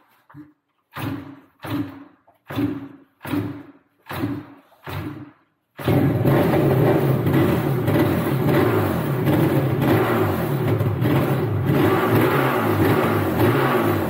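Yamaha RD 350 YPVS two-stroke twin being kick-started cold after several days unused: six short bursts of the engine turning over without catching, then it fires about six seconds in and keeps running steadily.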